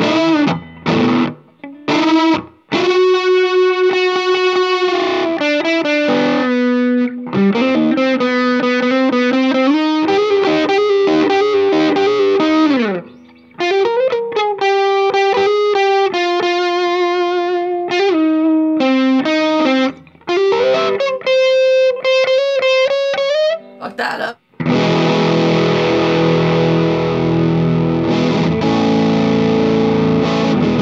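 Music Man StingRay RS electric guitar played through effects pedals: a lead line of held single notes with string bends and vibrato. About 24 seconds in it changes to a dense, distorted chord that rings to the end.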